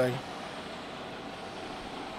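Steady outdoor background noise of a truck yard: an even hiss with no distinct event.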